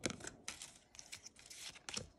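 Pokémon trading cards being handled and slid through by hand: a series of faint, short rustles and flicks of card stock.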